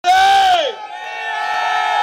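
A loud shout, held and then falling away in pitch about half a second in, followed by a long, steady high tone.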